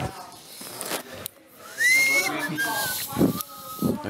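A person whistling a few short notes over quiet talk: a rising note about halfway in, then two shorter, lower notes.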